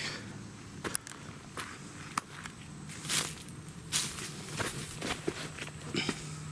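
Footsteps crunching over dry leaf litter, twigs and rock at a walking pace, about seven steps.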